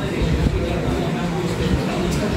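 Indistinct talking in a room, over a steady low rumble.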